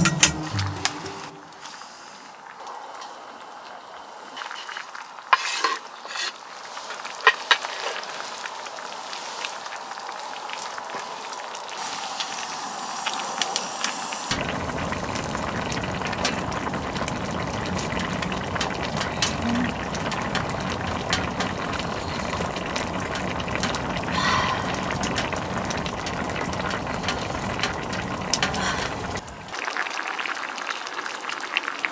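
Spicy braised chicken stew boiling hard in a pan on a wood stove, a steady bubbling that starts suddenly about halfway through, with a wooden spatula stirring and scraping in the pot. Before that, a few sharp clicks of utensils.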